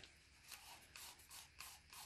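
Faint scraping of a wooden stir stick against the inside of a plastic cup as thin metallic paint mixed with pouring medium is stirred, in a run of soft strokes a few times a second.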